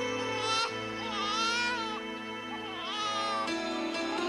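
An infant crying in long, wavering wails, one after another, over steady background music with sustained chords.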